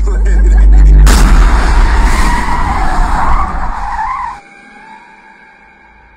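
A car hits a deer: a sudden crash about a second in, then the tyres skid for about three seconds under hard braking. The skid cuts off abruptly, leaving a faint steady high drone.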